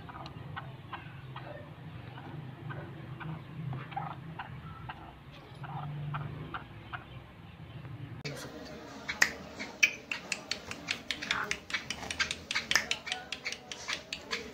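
Scattered light clicks and taps over a low murmur, then, from about eight seconds in, a dense run of sharp clicks several times a second.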